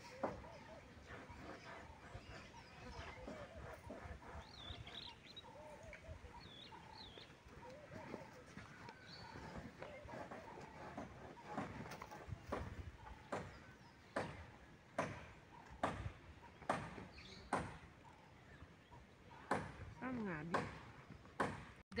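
Dry clothes being handled and folded: fabric rustling, with a run of short sharp pats or snaps of cloth about once a second in the second half. Faint voices and a few bird chirps sit in the background.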